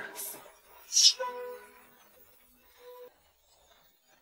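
Pressure cooker's weighted valve let off by hand after cooking, giving a short hiss of steam about a second in, followed twice by a brief, faint tone.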